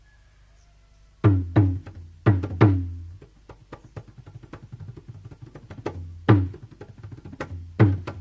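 Balinese gamelan semar pegulingan starting to play. A faint hum gives way about a second in to loud, sharp percussion strikes, with a quick patter of lighter strikes between them over a low steady hum.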